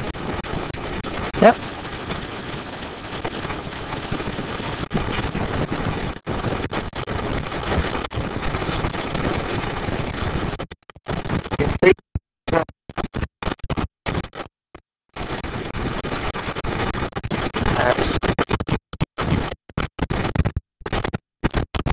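Indistinct low voices over a steady hiss, the sound cutting out abruptly to silence several times in the second half.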